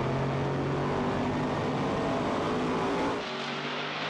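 Drag-racing Chevrolet S-10 pickup's 10-litre engine running at high revs with a steady note, heard from inside the cab. About three seconds in, the sound cuts to the truck heard from trackside, slightly quieter and without the deep low end.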